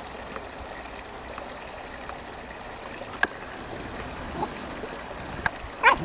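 A small woodland stream flowing steadily under a wooden footbridge, with a single sharp click about three seconds in and a brief loud pitched sound near the end.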